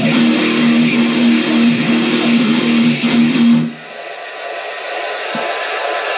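Electric guitar playing a riff that hammers on one repeated note, stopping abruptly a little past halfway. A quieter, hazy sound is left behind and slowly grows louder.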